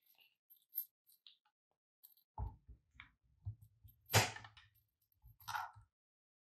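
Scattered light plastic clicks and knocks from a hand microphone and its coiled cord being handled and set down on top of a portable radio transceiver. The loudest knock comes about four seconds in, and a smaller cluster follows near the end.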